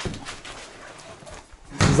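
A door being opened by hand: a click from the latch at the start, then quiet rustling and scraping of the door and hands against it.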